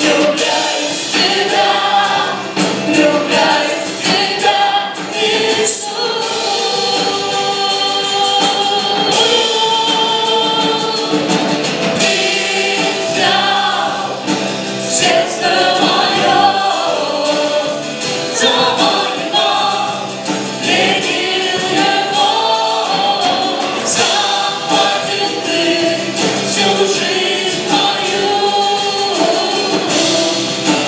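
A live church worship band playing a Christian song: a woman and men singing together into microphones over acoustic guitar, bass guitar, keyboard and drum kit.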